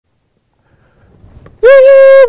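A party horn (New Year's noisemaker) blown in one loud, steady toot, starting just over a second and a half in after near silence.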